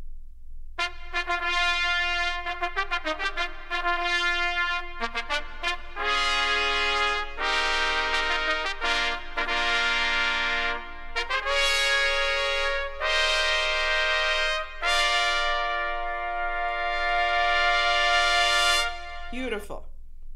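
Trumpets playing: one trumpet starts with quick short notes, then more trumpets join and hold full sustained chords, stopping about a second before the end.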